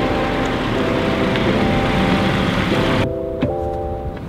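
Background music with steady sustained notes over a loud, even rushing noise like a passing vehicle. The rushing drops away about three seconds in, leaving the music.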